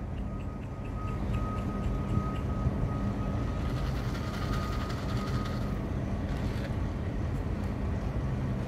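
Steady low mechanical hum with a faint high whine held from just after the start until about six seconds in.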